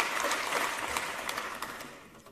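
Audience applause in a large hall, a dense patter of clapping that thins out and fades away toward the end.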